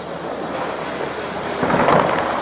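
A distant shell explosion swelling up about a second and a half in, over steady outdoor background noise, heard during heavy shelling.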